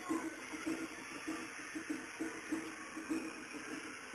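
Japanese festival music from a street procession, heard at a distance: a short pitched note repeated quickly, about three times a second, without a break.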